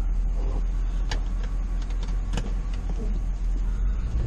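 Ford Expedition's engine idling, heard from inside the cab as a steady low drone, with a couple of short clicks.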